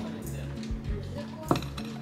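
Background music with a steady bass line. About one and a half seconds in comes a single sharp clink of porcelain plates knocking together as they are handled.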